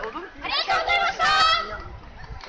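A high, nasal voice calls out a drawn-out phrase that ends on a long wavering note, harsh with clipping distortion.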